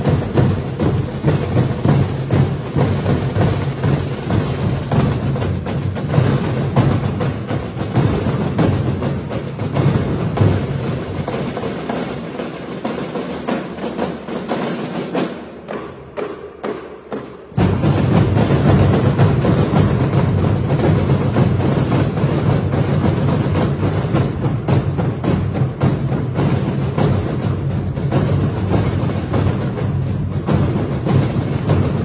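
School marching band playing, driven by a drum line of snare and bass drums. A little under halfway through the music thins and falls quieter for a few seconds, then the full band comes back in suddenly and loudly.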